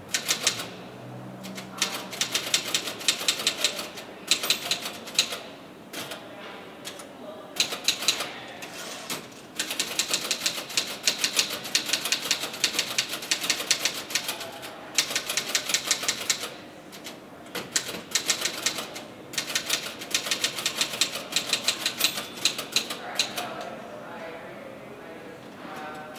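Typing on a keyboard: rapid keystrokes in bursts of a second to several seconds, broken by short pauses.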